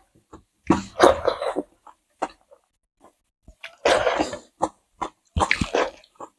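Close, wet eating sounds of people chewing and smacking their lips over rice and curry eaten by hand, picked up by clip-on microphones: three louder bursts of mouth noise with short smacks and clicks between them.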